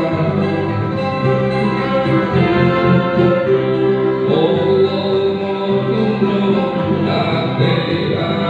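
A live keroncong ensemble playing: acoustic guitar, violin and cello with other string instruments, and a singer's voice carrying the melody over the band.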